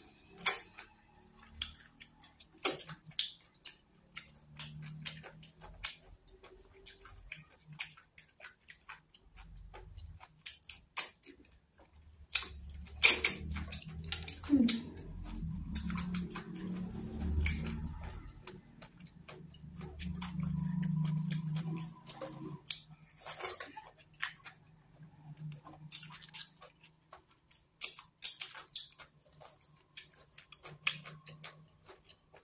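Close-miked eating of fufu and afang soup: wet chewing with many sharp mouth clicks and lip smacks. Stretches of low 'mm' humming come in the middle.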